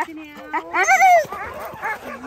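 A sled dog's loud, high-pitched call that rises and falls about a second in, followed by a few shorter, quieter calls.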